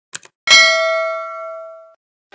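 Subscribe-button animation sound effect: two quick clicks, then a single bright bell ding that rings out and fades over about a second and a half.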